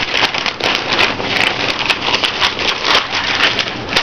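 Newspaper sale flyer rustling and crackling as it is folded and handled: a continuous run of paper crinkles.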